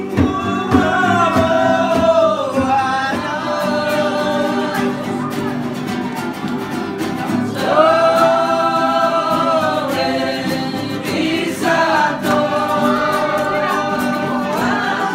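A group of people singing together over acoustic guitar strumming. The voices come in phrases, with short gaps where only the guitar carries on.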